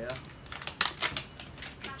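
Wrapping band being peeled and torn off a plastic toy ball: a run of crinkly crackles, sharpest a little under a second in.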